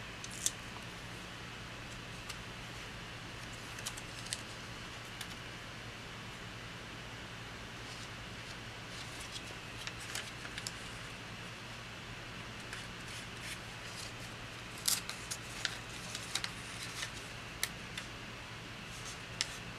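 Soft crinkles and small crisp clicks of paper pages and plastic sticker tabs being handled, pressed onto and folded over journal page edges, sparse at first and more frequent in the last few seconds. A steady low hum runs underneath.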